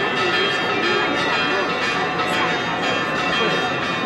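Church bells ringing continuously over the chatter of a large crowd.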